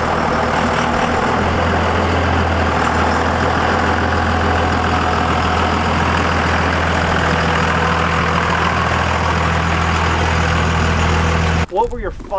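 Second-gen Dodge Ram's 24-valve Cummins 5.9-litre inline-six turbodiesel running steadily at a low idle as the truck creeps out. The sound is loud and unchanging, with no revving, and it stops abruptly near the end.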